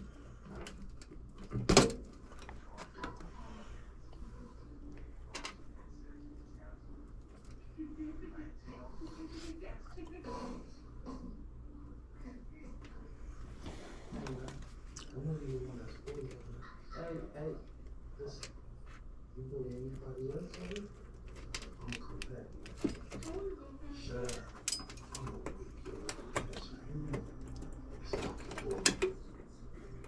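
Small clicks and snaps of hand tools on wiring as a burnt wire is skinned back and a new spade connector put on, the sharpest click about two seconds in and a few more near the end, over a steady low hum. Indistinct voices murmur faintly in the background.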